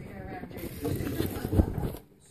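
Bubble wrap and plastic packaging rustling and crackling as it is handled, with a few dull knocks from handling.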